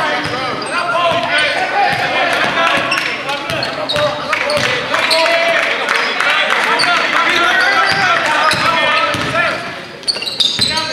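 A basketball being dribbled on a hardwood gym floor during live play, with voices of players, coaches and spectators throughout.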